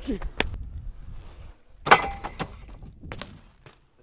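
A few sharp knocks and clatters, the loudest about two seconds in, after a low rumble that fades out over the first second and a half.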